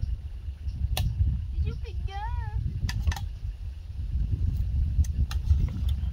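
Spoons clicking sharply against plates a few times as two people eat, over a steady low wind rumble on the microphone. A short wavering hum from a voice comes about two seconds in.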